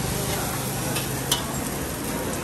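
Food sizzling in a wok while a metal spatula stirs and scrapes it, with a sharp metallic clink a little past the middle.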